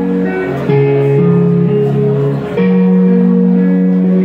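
Electric guitar played solo through an amplifier: sustained chords and held notes that change every half second to two seconds.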